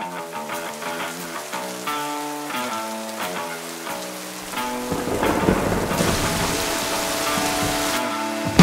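Rain falling hard, with a low rumble, fading in about halfway through and building over slow plucked-note music that plays throughout.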